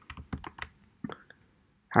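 Light, irregular clicking of computer keys or mouse buttons: about eight small clicks in the first second and a half, then a pause.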